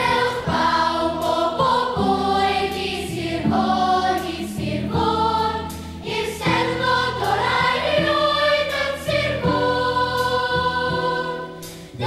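A large children's choir singing a song in Welsh over instrumental accompaniment. The choir comes in at the start and breaks off briefly between phrases just before the end.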